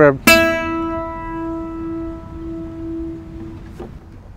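A single note plucked on a gypsy jazz (Selmer-style) acoustic guitar about a quarter second in, left to ring and slowly fade over about three seconds as the body resonates.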